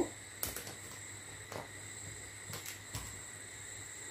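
Quiet room tone with a faint steady high-pitched whine and a few soft taps and clicks, as hands move over and touch a whiteboard.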